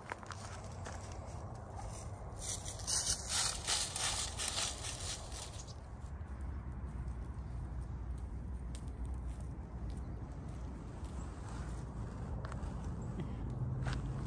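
Footsteps crunching through dry fallen leaves, loudest from about two to six seconds in, then quieter, irregular steps on a gravel path.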